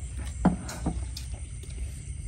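Faint clinks and taps of chopsticks on porcelain bowls and plates during a meal, a few short sounds over a steady low rumble.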